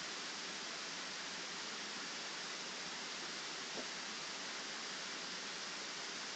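Steady low hiss of the recording's background noise, with one faint short tick a little past the middle.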